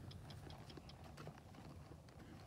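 A horse stepping and turning on soft dirt, with faint hoof falls and a run of small clicks through about the first second.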